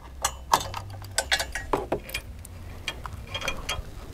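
Caravan breakaway cable and its metal clip being unhooked and handled at a tow hitch: scattered light metallic clicks and taps at an irregular pace.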